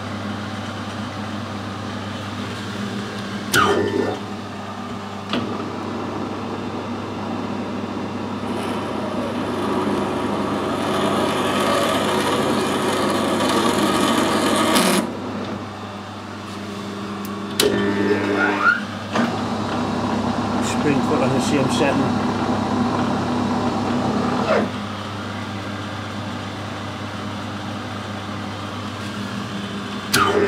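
Metal lathe screw-cutting a BSP thread in a brass fitting with a single-point tool: a steady motor hum, with two stretches of louder cutting noise as the tool takes passes, from about 8 to 15 seconds in and from about 19 to 25. A sharp knock comes just before each pass.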